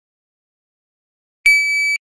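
Electronic shot-timer start beep: a single steady high-pitched tone that starts abruptly about a second and a half in and lasts about half a second, signalling the start of a 2.2-second par-time drill.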